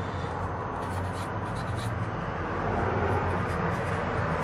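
A marker pen writing numbers on paper in short, faint strokes over a steady background hum and hiss.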